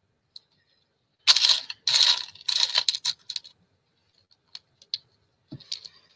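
Small hard objects rattling and clattering in four or five quick bursts over about two seconds, followed by a few light clicks.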